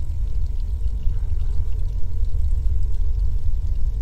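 Water running from a tap into a bathroom sink, over a steady deep low rumble.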